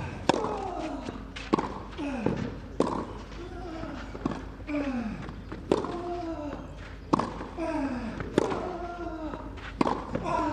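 A tennis rally on clay: about eight sharp racquet-on-ball strikes, one every second and a half or so, each answered by a player's short grunt that falls in pitch.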